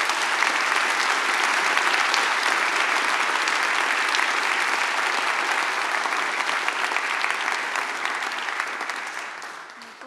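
Audience applauding: the clapping is already at full strength as it begins, holds steady, and fades away over the last couple of seconds.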